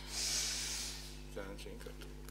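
A breathy hiss lasting about a second, like a person exhaling close to a microphone, followed by a brief faint bit of voice. A low steady hum from the sound system runs underneath.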